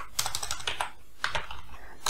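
Computer keyboard typing: an uneven run of key clicks as a short word is typed.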